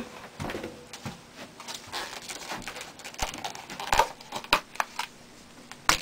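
Scattered rustles, taps and knocks from someone off-camera fetching and handling things. The knocks are loudest about four seconds in, and there is a sharp click near the end.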